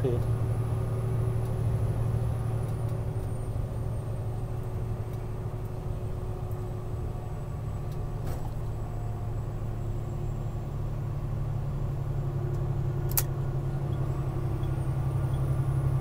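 Steady low engine and road drone of a truck heard from inside the cab while cruising at highway speed, with a single brief click near the end.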